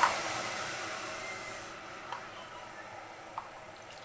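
Water hissing in a hot stainless steel pot just after being poured in, the hiss dying away steadily as the water starts to bubble. A short click at the very start.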